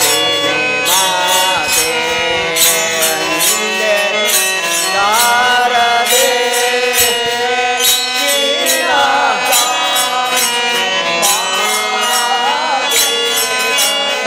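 Male voice singing a Hindu devotional bhajan with instrumental accompaniment, the melody bending and held over a regular percussion beat.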